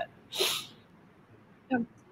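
A short, sharp burst of breath noise about half a second in, followed by near quiet and a faint click near the end.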